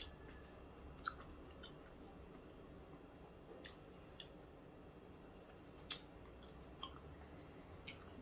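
Faint chewing of a mouthful of raw-fish kinilaw, with a handful of short, soft clicks from the mouth scattered through.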